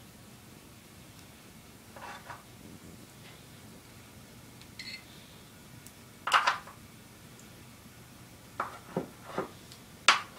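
Scattered clinks and knocks from a glass marinara jar being handled and set down on the counter, with the loudest cluster of knocks a little past the middle and three quick sharp taps near the end, over a quiet room background.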